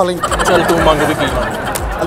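A rapid warbling call with a wavering, rippling pitch, over background music with a steady low beat.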